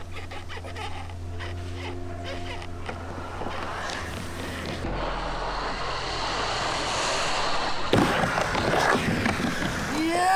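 Skateboard wheels rolling on a wooden ramp and growing louder, then a sharp clack of the board landing about eight seconds in, followed by a few more knocks.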